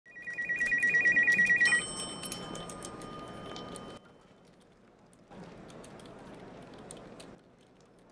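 Desk telephone ringing with a fast electronic trill, about nine pulses a second, that cuts off abruptly with a click under two seconds in. After it, only quiet room tone with faint ticks and rustles.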